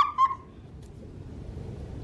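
A woman's high-pitched laughter trailing off in the first half-second, then a low, steady background rumble.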